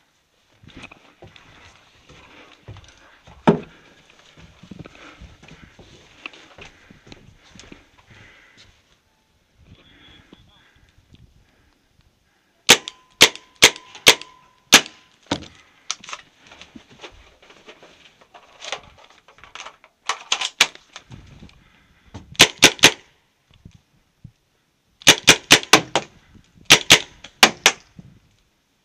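Paintball marker fired close by in several quick bursts of sharp shots, starting a little before the middle and growing more frequent towards the end. Before that, only faint shuffling and knocks of movement, with one louder knock a few seconds in.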